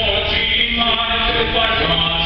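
Small male vocal ensemble singing a cappella in close harmony, holding chords that change about every half second.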